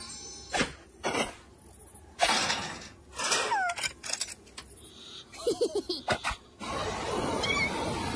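Cartoon sound effects: a few sharp whooshes and hits and short squeaky character vocal noises, including a quick run of about five chirps. About six and a half seconds in, a steady rush of wind sets in.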